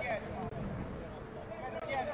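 Men's voices calling out across an outdoor football pitch during play, faint over low background noise, with a call near the start and another near the end.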